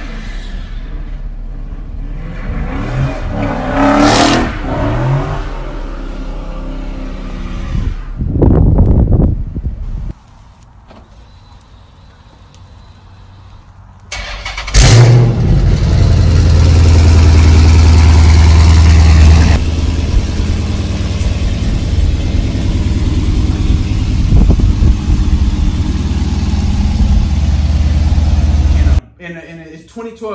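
Phone-recorded clips of a Dodge Charger SRT8 392's 6.4-litre HEMI V8 running and revving. There are short loud bursts about 4 seconds in and around 8 to 10 seconds, then a quieter stretch. From about 15 seconds a loud, steady, deep engine drone carries on until shortly before the end.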